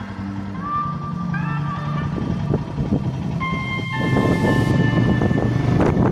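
Background music fading out over the first two seconds, giving way to a motorcycle ride: engine rumble and wind noise on the onboard microphone, louder from about four seconds in.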